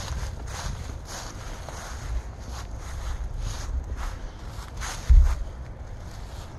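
Footsteps crunching through dry fallen leaves, about two steps a second. A low thump about five seconds in is the loudest sound.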